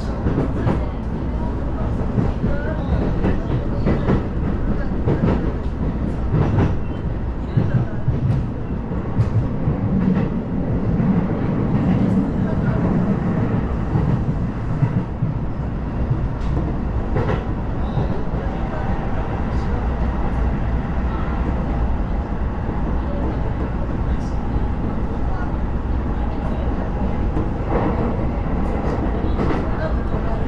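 Sotetsu commuter train heard from inside the passenger car while under way: steady wheel-on-rail running noise as the train speeds up, with irregular sharp clacks over rail joints.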